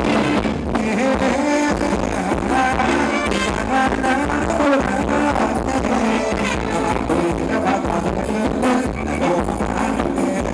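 Live band playing Thai ramwong dance music, with a singer's voice over the instruments.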